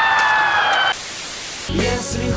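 A high, wailing cry, held and falling slightly in pitch over a hiss, breaks off about a second in and leaves a steady static hiss. Low sound comes in near the end.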